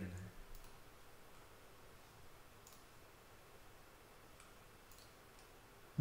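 Near silence with a few faint computer mouse clicks, spaced a second or two apart.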